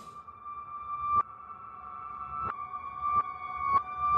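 Music played backwards: sparse high single notes that each swell up and then cut off abruptly, four times over.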